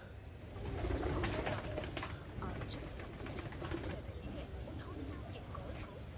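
Domestic pigeons cooing close by, with scattered light clicks and a low rumble underneath.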